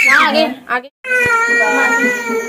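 A toddler crying in a high wail that rises and falls and breaks off about half a second in. After a brief silence near one second, a steady held musical note begins.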